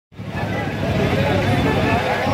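A crowd of many people talking at once, a dense babble of overlapping voices that starts abruptly.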